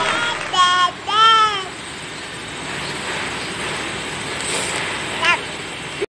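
A toddler's high-pitched voice making two short sing-song calls about a second in, the second arching up and down, with a brief rising squeak near the end. Steady street noise runs underneath.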